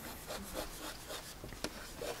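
Chalk scratching faintly on a blackboard in a series of short strokes as words are written, with one sharp click about a second and a half in.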